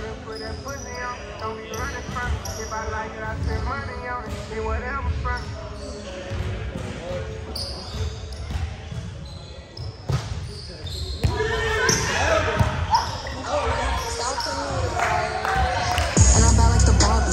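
Volleyball being hit and bouncing on a hardwood gym floor, sharp thuds that echo in the large hall, with a few hits close together about two-thirds of the way in. Players' voices call and chatter throughout, louder in the second half.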